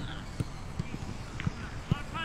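Footsteps of footballers jogging on an artificial grass pitch: four or five dull, irregular thuds.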